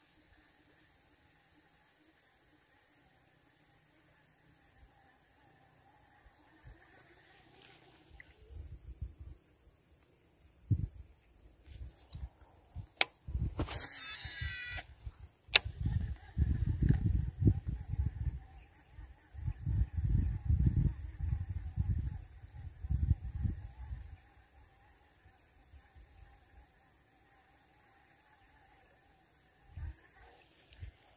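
Faint insects calling steadily, with a high pulsing note about once a second. Through the middle this is under a run of low knocks and rumbles of rod and reel handling noise as a soft frog lure is cast and worked across the pond, with a brief hiss a little before halfway.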